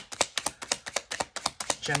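A rapid, irregular run of sharp clicks or taps, about seven a second.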